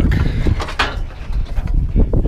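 Scraping and knocking as a stuck 10-inch benchtop bandsaw is wrestled free of a pickup truck bed, over a steady low rumble on the microphone.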